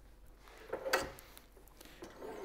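Faint handling sounds of a wooden pen blank and plastic bushings on a steel lathe mandrel, with one short click and scrape about a second in.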